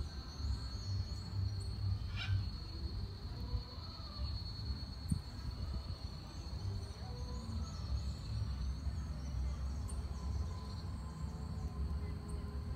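A steady, high-pitched insect trill over a low rumble, with a few faint higher chirps.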